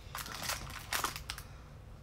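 A hinged plastic toy mystery cube is opened and the clear plastic bag of figure pieces inside is pulled out. The bag gives off a few short crinkles and crackles, in two clusters about half a second and a second in.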